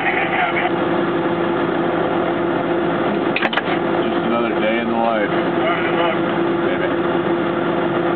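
Steady engine hum of an idling vehicle, with muffled voices in the middle and a pair of sharp clicks about three and a half seconds in.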